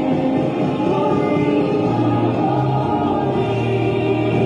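Gospel worship music with choir singing over sustained chords; a low bass note comes in about halfway through.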